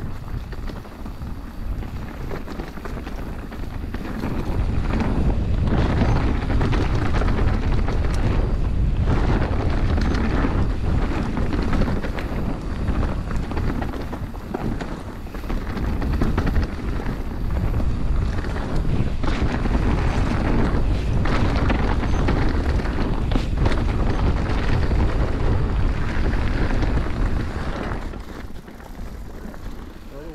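Wind noise on the camera's microphone mixed with tyre rumble and chassis clatter as an Orbea Occam full-suspension mountain bike rides fast down a dirt forest trail. It gets much louder about four seconds in and eases off near the end.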